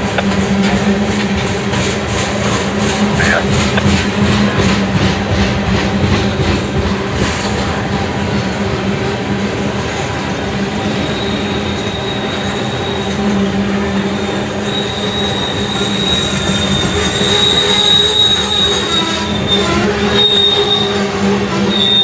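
CSX freight train of tank cars rolling past, with steady wheel and rail rumble and regular clicks of wheels over rail joints in the first half. A thin, high wheel squeal sets in about halfway through and grows louder near the end.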